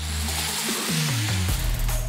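Kia Seltos 1.4 turbo-petrol SUV driving past on a wet road, with background music: a steady hiss of tyres on the wet surface, and the engine note falling in pitch about halfway through as the car goes by.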